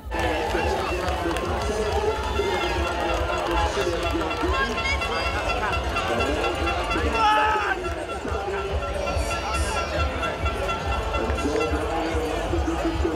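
Outdoor spectator ambience: people talking, with a voice and music over loudspeakers in the background and a steady low rumble of wind on the microphone.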